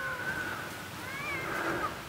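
Distant high-pitched squealing of riders, a woman and a child, coming down an alpine coaster (summer bobsled track on rails). The cries waver up and down for most of the two seconds.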